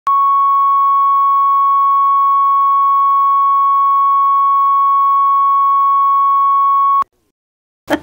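Steady 1 kHz line-up test tone recorded with videotape colour bars, one unwavering pitch that cuts off abruptly about seven seconds in, followed by a brief silence.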